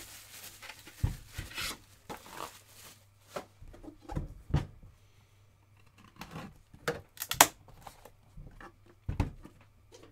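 Packaging rustling and tearing for the first two seconds, then scattered knocks and taps as a sealed trading card hobby box is slit open and handled on a table. The sharpest knock comes about seven and a half seconds in.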